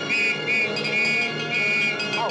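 A high-pitched whistle sounds in about four short held notes at one steady pitch. A music score plays underneath.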